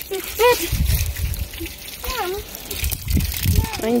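Water running from a garden hose, splashing onto soil and paving, with two short voice sounds.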